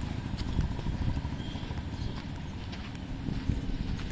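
Footsteps on a dirt and gravel yard as the camera is carried around a parked car, a few scattered crunches and knocks over a steady low rumble.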